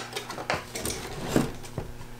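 A handful of light clicks and taps from hands handling the rubber motor drive belt and pulley inside a Bell & Howell 16mm projector as the belt is pulled around by hand.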